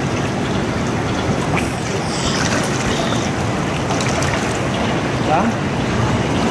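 Steady rush and splashing of swimming-pool water, stirred by kicking mermaid-tail fins.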